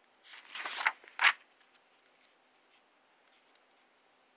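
The paper page of a children's storybook being turned by hand: a rustle and a brisk swish in the first second and a half, then faint small ticks.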